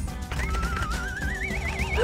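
Cartoon-style reveal sound effect: a warbling, whistle-like tone that climbs steadily in pitch for about a second and a half, over steady background music.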